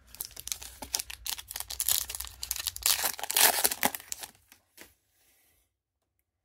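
Foil wrapper of a Panini Prizm trading-card pack being torn open and crinkled by hand: a dense crackling, loudest a little past the middle, that ends about three-quarters of the way through.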